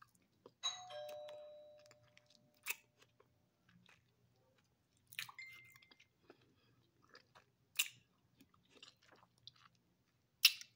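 Crunching and chewing of a frozen grape coated in strawberry jello powder, with a few sharp crunches. A short ringing tone sounds about half a second in, and a higher one around five seconds in.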